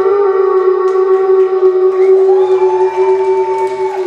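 A live band's final note held as one steady sustained tone after the drums stop, ending a song. Rising and falling whoops from the crowd join about halfway through.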